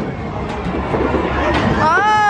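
Arcade din with the low rumble of a ball rolling up an Ice Ball alley-roller lane, after a sharp knock at the start. Near the end a child's high, wailing cry begins.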